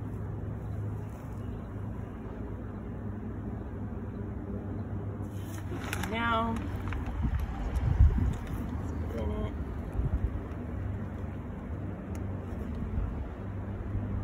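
Steady low background rumble, with a short high wavering voice-like sound about six seconds in and a single low thump about eight seconds in.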